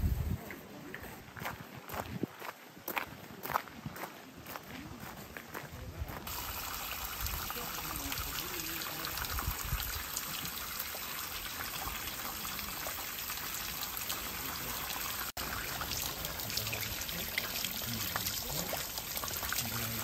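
Irregular sharp clicks and crunches for the first few seconds. Then, from an abrupt change about six seconds in, the steady rush of flowing stream water.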